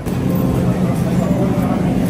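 Steady low hum of a supermarket's open refrigerated display case, with a faint murmur of shoppers behind it.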